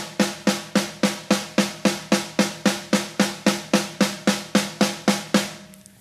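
Snare drum struck with even single strokes from one hand, the left, at about three strokes a second, each hit ringing briefly. This is an isolated weak-hand practice exercise. The strokes stop shortly before the end.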